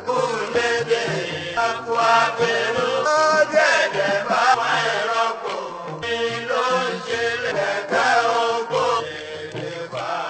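Sakara music: a lead voice chanting in Yoruba over hand-drum percussion, with a held note sounding underneath at times.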